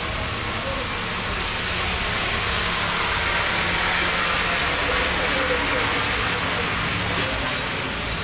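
Steady rushing noise inside a bus on a rainy day, with rain on the bodywork and vehicle noise blended together, growing a little louder midway.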